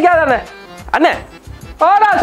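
Three short, high-pitched cries, each rising and then falling in pitch, over background music.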